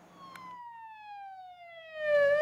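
Ambulance siren wailing, one slow downward sweep in pitch that fades in just after the start.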